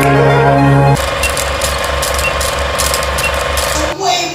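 Intro music ends abruptly about a second in and gives way to a steady mechanical rattling sound effect, about five pulses a second, that cuts off suddenly at the end.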